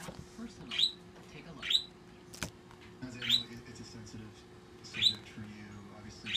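A pet bird chirping: four short, rising chirps about a second or two apart, with one sharp click about halfway through.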